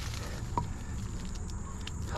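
Soft scraping and rustling of soil and debris as a stone is worked loose from a dirt bank by hand, over a steady high insect drone.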